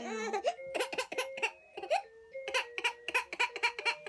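A baby vocalizing in short, rapidly repeated bursts over a simple electronic toy tune of held notes stepping up and down in pitch.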